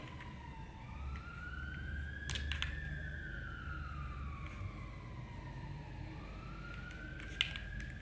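A faint siren wailing slowly: its pitch rises, falls and rises again, about one sweep every few seconds. There are a couple of light clicks, once early on and once near the end.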